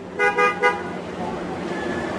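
A vehicle horn sounding three short toots in quick succession, followed by steady traffic noise that slowly grows louder.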